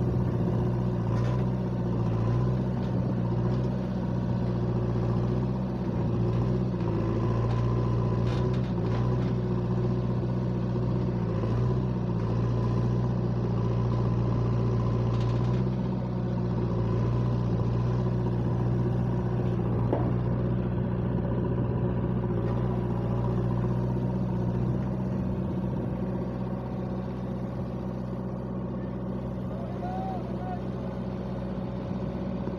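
JCB backhoe loader's diesel engine running steadily, its pitch dipping and rising slightly as the digging arm works.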